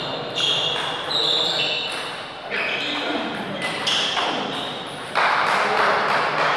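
Voices talking in a large echoing sports hall between table tennis games, with a few light taps and pings of a celluloid ball. A louder rustling noise starts suddenly about five seconds in.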